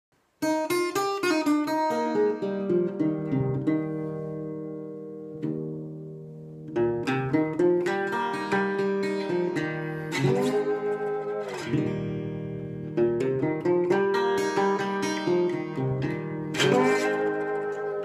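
Acoustic parlor guitar played with a slide in open D tuning. A run of picked notes starts about half a second in, a chord rings and fades away in the middle, then the playing picks up again with the gliding pitch of the slide.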